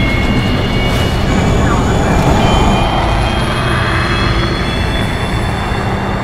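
Fighter jet engine running on afterburner: a loud, continuous roar with a high whine, one strand of which slowly falls in pitch.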